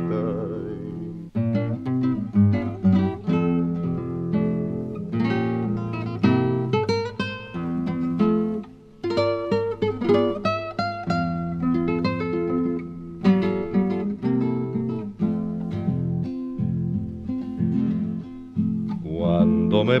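Instrumental acoustic guitar interlude in an Argentine folk song: plucked melody notes and chords over a bass line, with a short pause about halfway. A male voice comes back in with the next verse at the very end.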